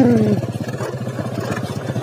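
Small motorcycle engine running steadily at low revs, a low even hum with a fast pulse, as the bike moves slowly along a rough dirt track.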